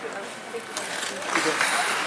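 Spectators' voices and calls around an ice rink, with a short sharp sound, a clap or skate scrape, about three-quarters of a second in and again near the middle.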